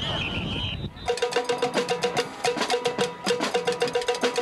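A whistle blows for about a second over crowd noise. Then the sound cuts suddenly to fast, rhythmic percussion: a cowbell-like clank struck several times a second with drum-like taps.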